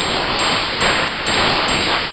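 Cartoon sound effect: a loud, steady hiss like static or heavy rain, with a thin high whine and faint irregular ticks over it, breaking off at the very end.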